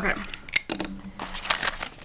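A run of short, sharp clicks and rustles from handling a cash-budget ring binder: the plastic zip pocket and the paper banknotes in it being taken out by hand.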